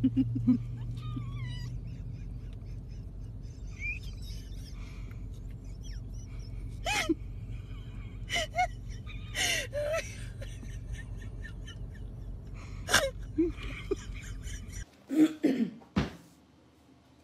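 Several short, sharp breathy bursts, gasp-like, a second or more apart, over a steady low outdoor background noise. The background stops suddenly near the end.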